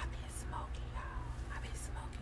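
Faint whispered or muttered speech, a few short snatches, over a steady low hum.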